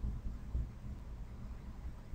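Faint low rumble of room tone, with no distinct sound events.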